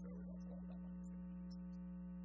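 Steady electrical mains hum in the audio feed: one strong low buzzing tone with a ladder of even overtones above it, unchanging throughout.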